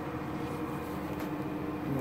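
Steady hum of room ventilation, with one low steady tone running under it.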